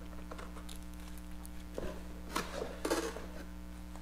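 Handling noise of paper and plastic: short rustles and light taps as a printed manual and a CD in a plastic sleeve are handled and put down, with the loudest rustles about two and a half and three seconds in. A steady low hum runs underneath.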